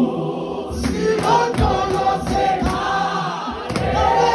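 A congregation singing a Xhosa hymn together in parts, led by a man's voice through a microphone, with several notes held long.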